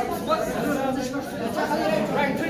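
Several people talking at once in a large, echoing hall: a steady hubbub of overlapping voices.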